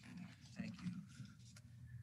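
Faint meeting-room tone with a low steady hum and a few soft, brief noises.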